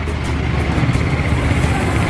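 Steady street noise with a low rumble, like motor traffic, and faint music underneath.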